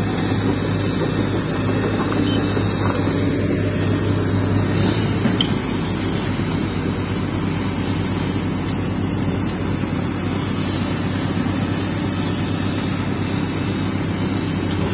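Steady engine drone of heavy construction machinery running without a break, a low hum with an even mechanical tone.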